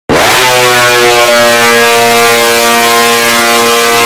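One long, loud horn blast used as a DJ horn sample: it swoops up in pitch as it starts, then holds a single steady note.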